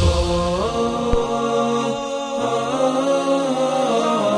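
Vocal chant music under a television channel's ident card: long held voices in several parts, moving together to new notes about every second or two.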